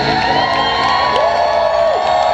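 Live indie-rock band playing in a hall, the beat thinning out to held tones, while the crowd cheers and whoops.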